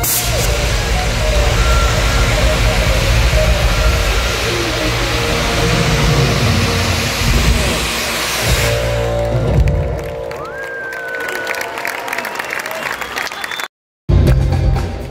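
Loud, steady hiss of stage CO2 jet cannons firing over a live rock band for about the first nine seconds. It stops, leaving the band playing more quietly, and the sound cuts out for a moment just before the end.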